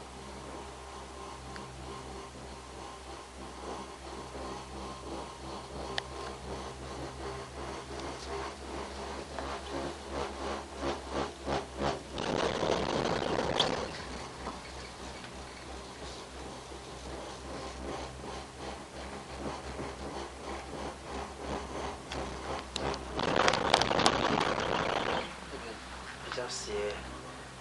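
Genting Skyway gondola cabin riding the cable: a steady hum runs under a rattle of ticks. The rattle swells twice into a loud clatter, for a second or two about twelve seconds in and again for about two seconds near the end, as the cabin's grip runs over a tower's sheaves.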